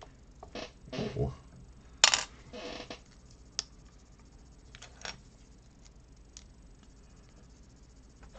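Loose plastic Lego pieces clattering and clicking as they are handled and sorted. The loudest is a sharp rattle about two seconds in, followed by a brief shuffle, then scattered small clicks.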